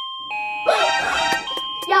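Electronic door chime: a few steady electronic tones in succession, signalling someone arriving at the front door.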